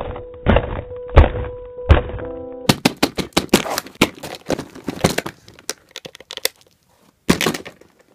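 A run of heavy thumps and sharp cracks as a plastic SpongeBob toy figure is hit and knocked about: four deep thumps over a steady tone at first, then a quicker clatter of cracks, a short pause, and a last brief burst near the end.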